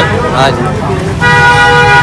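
A vehicle horn honks once, a steady held note that starts just past halfway and lasts almost a second.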